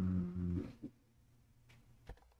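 A man's low, drawn-out hummed "ummm" filler that stops within the first second, then quiet room tone with a faint keyboard click or two.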